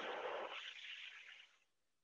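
A person's slow, audible breath taken in time with a rocking yoga movement, a soft breathy rush that fades out about one and a half seconds in.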